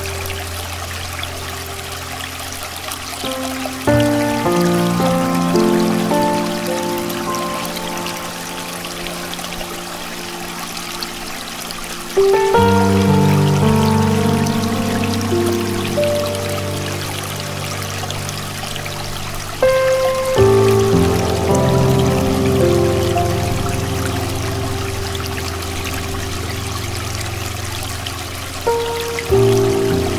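Slow, soft solo piano music: sustained chords struck about every eight seconds, each ringing on and fading, over a steady background of flowing stream water.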